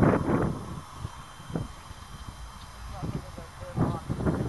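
People's voices calling out at the start and again near the end, with a low rumble in between.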